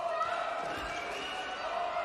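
Steady crowd noise of spectators in an indoor handball arena during play.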